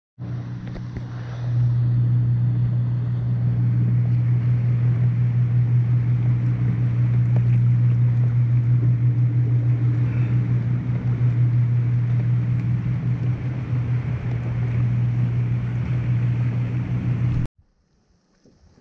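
A steady low motor hum, unchanging in pitch with a rapid flutter in level, that grows louder about a second and a half in and cuts off suddenly near the end.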